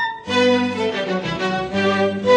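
Music with bowed strings, violin to the fore, holding sustained notes; it drops out briefly just after the start, then comes back.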